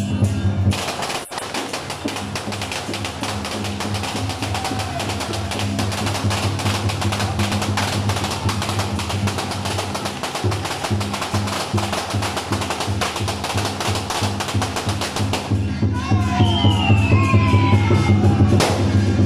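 Loud amplified procession music with a steady, pulsing bass beat. A dense, rapid percussive clatter lies over it from about a second in until a couple of seconds before the end, when sliding, wavering tones come through instead.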